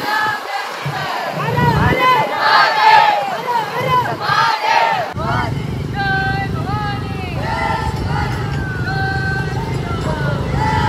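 A crowd of men shouting chants together, many voices overlapping. From about halfway, a low rumble of motorcycle and scooter engines runs beneath the shouting.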